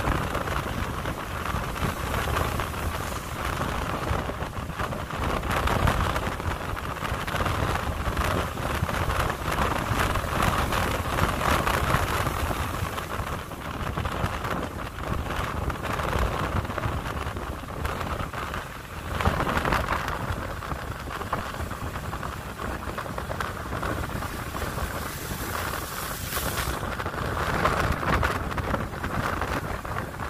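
Rough, cyclone-driven sea surf breaking and washing up the beach as a continuous rushing noise that swells and eases every several seconds.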